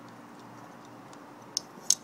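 Two short, light metallic clicks near the end from a titanium folding knife being handled, over a faint steady background hum.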